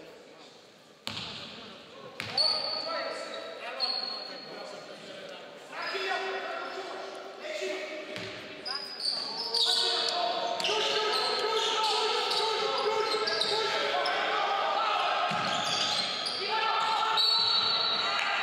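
Shouting voices of players and spectators in a large gym hall, with a basketball bouncing on the wooden court and brief high sneaker squeaks. The shouting grows louder about halfway through and stays loud.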